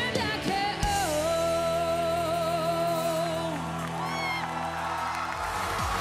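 A female singer holds a long, wavering final note into a handheld microphone over a backing track. Near the end, audience cheering rises.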